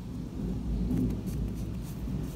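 Hands folding and adjusting unbleached cotton lining fabric close to the microphone: a low, steady rumble with a few faint, soft rustles.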